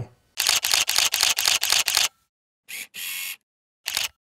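Camera shutter sound effect: a rapid burst of about a dozen shutter clicks, roughly seven a second, lasting under two seconds. After a short pause come a brief click, a half-second rasp like a motor-drive wind, and one last click near the end.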